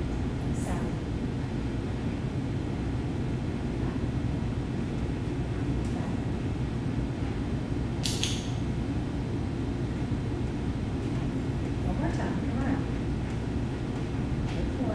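Steady low room rumble, with one brief high metallic clink about eight seconds in.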